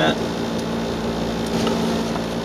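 A steady low hum from a running machine, with a few faint ticks.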